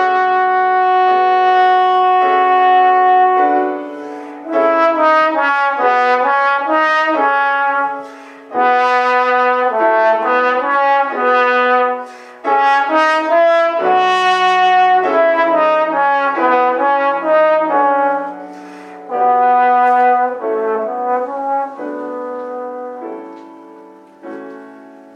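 Trombone playing a melody over grand piano accompaniment. It opens on a long held note, then plays phrases of quicker notes broken by short pauses for breath. Near the end the trombone stops and the piano carries on alone, more quietly.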